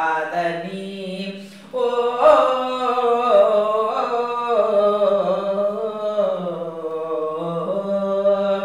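A woman singing a melody unaccompanied, phrase by phrase, with her voice gliding between notes and a short pause about a second and a half in.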